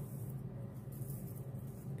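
Quiet room tone: a steady low hum with faint background noise.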